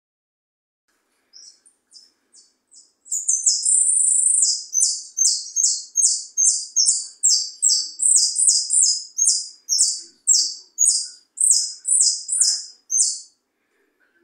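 A jilguero (saffron finch) singing: a few soft, high notes, then a long song that opens with a sustained trill and goes on as a rapid series of loud, high, downward-slurred notes, about two a second, stopping shortly before the end.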